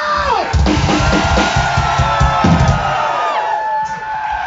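Live rock band playing loudly: fast drum hits start about half a second in, with held, ringing guitar notes over them.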